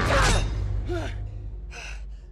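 A man's loud, strained yell as he lunges, falling in pitch, then a shorter grunt about a second in and a harsh breath near the end, over a low steady rumble.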